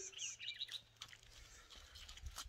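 Faint bird chirps, a few short high calls in the first second, then quieter with a few light clicks.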